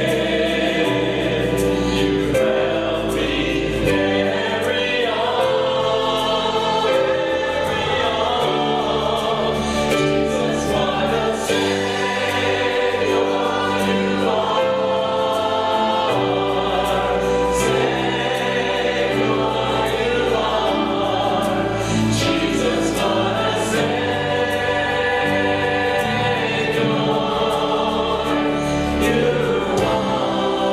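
A church choir and worship leaders on microphones singing a gospel worship song together with instrumental accompaniment, full and continuous.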